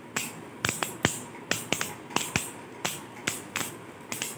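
Two Beyblade Burst spinning tops clashing in a plastic stadium: sharp, irregular clacks about three times a second as they strike each other.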